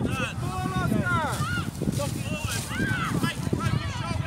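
Overlapping distant shouts and calls of young footballers and touchline spectators across an open grass pitch, high-pitched and arching, over a steady low rumble.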